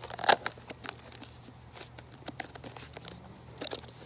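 Plastic storage container being handled and its lid pressed shut: a loud snap about a third of a second in, then scattered lighter plastic clicks and crinkles.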